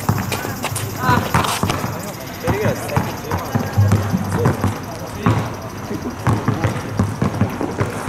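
A basketball bouncing on an outdoor asphalt court, a string of separate thuds, with people's voices heard alongside.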